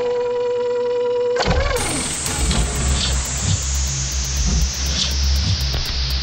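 Industrial techno breakdown with no kick drum: a held synth tone, then about a second and a half in a falling pitch sweep, followed by a long, slowly descending noise sweep over low pulsing bass.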